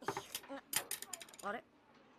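A quick run of sharp clicks in the first second or so, broken by short vocal sounds.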